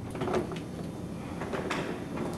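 A wooden door being unlatched and opened: a few faint clicks and handling knocks from the latch and door.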